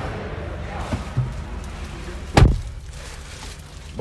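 A car door of a Chevrolet Cruze hatchback shut once from inside, a single heavy thud about two and a half seconds in, with a few small clicks and shuffling before it as someone gets into the driver's seat.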